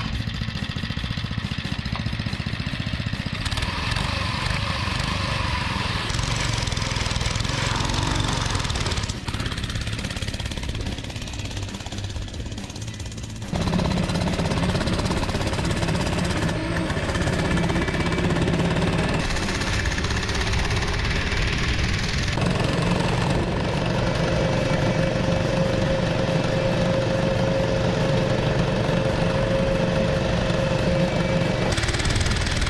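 Baja Dirt Bug mini bike's small single-cylinder engine running as the bike is ridden over dirt. The sound changes abruptly several times, is quieter for a few seconds in the middle, then runs loud and steady.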